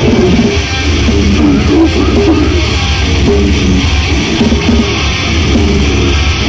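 A live metal band playing loudly: electric guitar and bass over drums.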